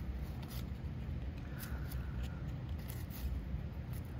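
Cardboard baseball trading cards being slid one by one off a handheld stack, rustling against each other with a few soft ticks.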